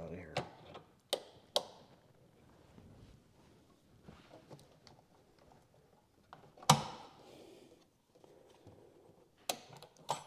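Pliers working a spring hose clamp on a heater core hose: a few sharp metal clicks in the first two seconds, quiet handling and scraping, then a loud clank with a short ring about two-thirds through and another click near the end.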